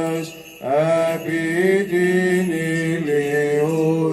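Greek Orthodox Byzantine chant: a cantor's voice holds long, slowly gliding notes, breaking off briefly for a breath about half a second in.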